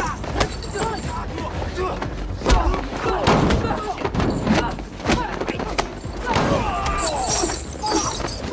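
Hand-to-hand fight: a rapid, irregular series of sharp punch and kick hits, mixed with grunts and shouts from the fighters, loudest around the middle and again near the end.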